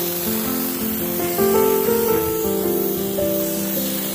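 Background music of slow, held notes changing pitch in steps, over a steady hiss of compressed air from an airbrush-style facial sprayer misting the skin.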